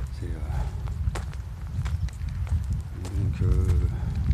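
Footsteps crunching on a gravel path, a few sharp scuffs spread over the seconds, over a constant low rumble. A man's voice makes short hesitant vocal sounds just after the start and again near the end.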